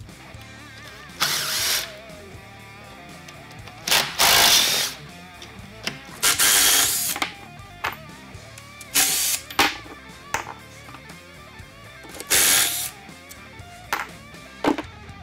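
Cordless impact driver running in five short bursts, backing out the end-bell bolts of an old electric motor. Guitar music plays underneath.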